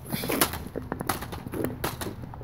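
Plastic light-up toy lightsabers clacking against each other a few times in a mock sword fight, in short sharp knocks.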